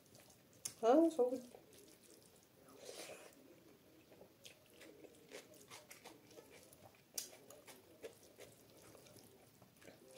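Close-up eating sounds of a person eating rice and curry by hand: soft wet chewing and mouth clicks scattered throughout. About a second in there is a brief, louder vocal sound, and there are soft noises of fingers mixing rice on a steel plate.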